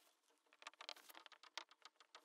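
Faint squeak and scratch of a marker pen writing on a whiteboard: a quick run of short strokes, busiest in the middle.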